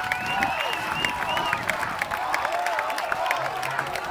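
Audience clapping and cheering, with many high calls rising and falling over the clapping. A low held note comes in near the end.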